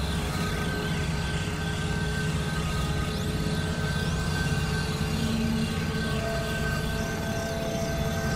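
Experimental synthesizer drone music: a dense, steady low drone with several sustained tones, and faint sliding tones high above it.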